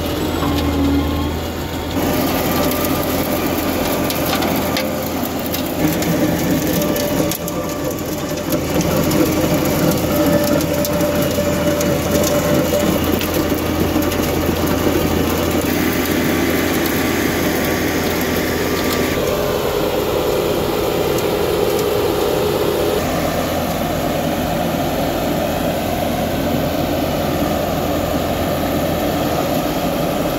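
Astec RT800 wheel trencher running: its turbocharged Cummins B3.3 diesel engine works under load while the toothed cutting wheel grinds through gravelly soil, a steady loud mechanical clatter. The sound shifts abruptly several times.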